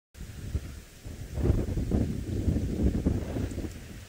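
Wind buffeting the microphone: an uneven low rumble that grows louder about a second and a half in.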